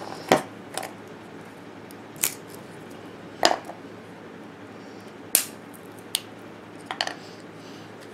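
Fatwood (resin-rich pine) sticks being broken and split apart by hand on a plywood board, giving about seven separate sharp wooden clicks and snaps spaced a second or so apart.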